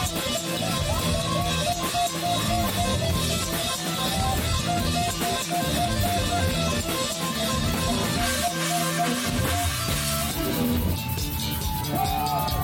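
Live heavy metal band playing: electric guitars, bass guitar and drums.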